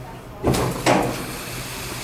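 Garaventa outdoor platform lift jolting as it sets off downward: a big bump heard as two clunks about a third of a second apart, the first about half a second in, each trailing off.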